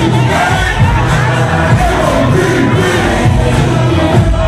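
Loud hip-hop music with a steady heavy bass and a crowd of voices shouting over it.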